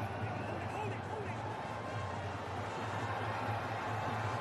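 Cricket ground ambience: a steady background of stadium noise with faint, distant voices and shouts from the field.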